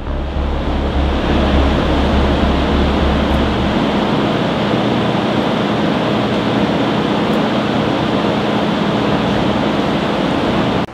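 Steady wind and machinery noise on a warship's flight deck, with a faint hum. A deep rumble underneath drops away about four seconds in.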